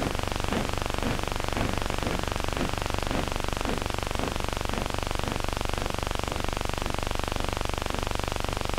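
Steady, dense hiss from an old optical film soundtrack, with faint regular strokes about twice a second beneath it.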